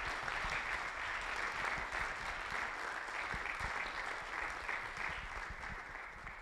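Audience applauding in a hall: many hands clapping steadily, easing off slightly near the end.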